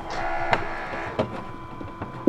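Dreame robot vacuum base station running its mop-pad drying fan: a steady hum that swells with a louder whir in the first second, then settles. A few sharp plastic clicks sound about half a second and a second in.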